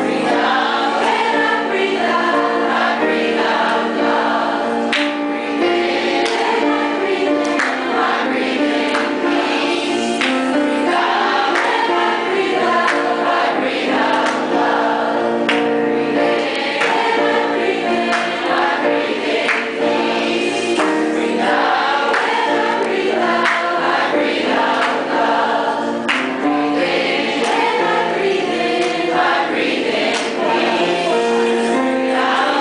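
A large mixed choir, mostly women's voices, singing together without a break, several pitches sounding at once.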